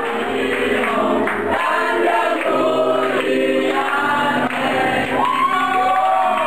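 Music with several voices singing together, the melody gliding up and down without a break.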